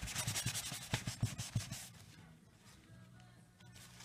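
A wax crayon and tissue rubbed in quick scrubbing strokes over paper. The strokes are busy and scratchy for about the first two seconds, then fainter and sparser.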